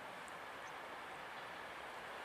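Faint, steady sound of a distant Hr1 'Ukko-Pekka' steam locomotive, No. 1009, approaching with its train.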